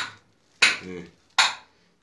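Three sharp clinking knocks, about two-thirds of a second apart, each ringing briefly in a narrow rock mine shaft.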